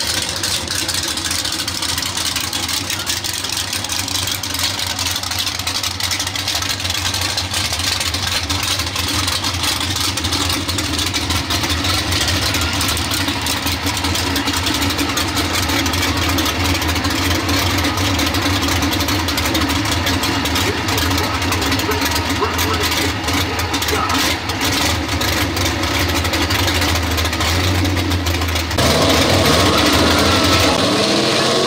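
Pro stock 4x4 pulling truck engine idling steadily with a deep, even rumble. About a second before the end the revs jump and climb as the truck launches into its pull.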